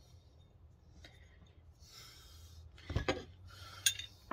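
Quiet handling of steel box-opening tools, with light rubbing, then a few short metallic clinks about three seconds in and again near the end as two of the tools knock together.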